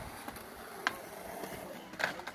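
Skateboard wheels rolling on concrete, with one sharp clack a little less than a second in.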